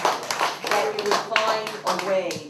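An audience clapping, many hands at once, with people's voices talking over it.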